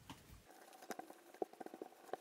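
Faint, irregular ticks and taps of a whiteboard being worked on, the marker and the eraser knocking and rubbing against the board, starting about half a second in.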